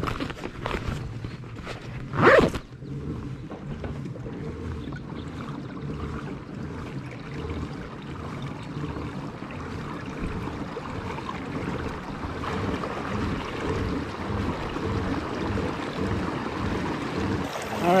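A kayak under pedal power moving out across calm water: steady churning from the drive and water along the hull. A short loud knock comes about two seconds in.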